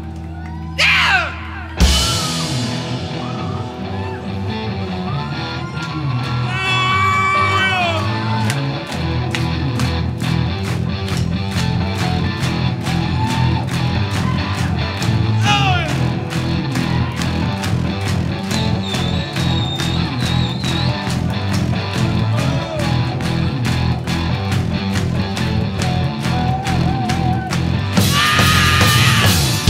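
Live rock band breaking into a heavy, metal-style instrumental section led by electric guitar. A vocal shout comes about a second in, then the band crashes in just before two seconds and plays loudly over a steady, driving drum beat.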